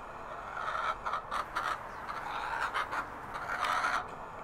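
Chickens clucking: a string of short calls starting about half a second in, over a steady background hiss.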